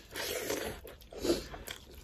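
Close-miked eating: crunchy bites and chewing of a crisp flatbread, in two louder bursts about half a second and a second and a quarter in, with small clicks of mouth and fingers between.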